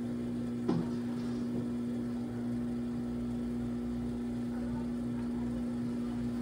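Electric pottery wheel motor humming steadily as the wheel spins, with a short brief sound a little under a second in.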